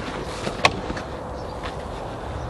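One sharp click of a black plastic webbing buckle knocking as it is handled, about two-thirds of a second in, followed by a few fainter ticks and rustles of nylon webbing. A steady low background noise runs underneath.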